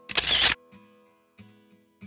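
Camera-shutter sound effect: one short, loud burst of noise near the start. Faint guitar music fades out under it.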